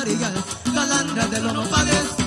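Live Guerrero costeño son band playing an instrumental passage, with a bass line, a melody and a steady percussion beat driven by a hand shaker.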